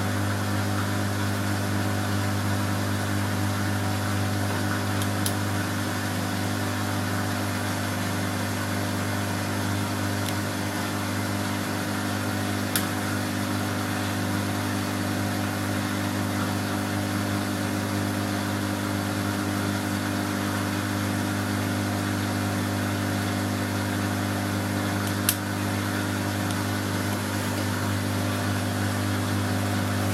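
Front-loading washing machine running, its drum turning the wet laundry with a steady low motor hum and a few faint clicks.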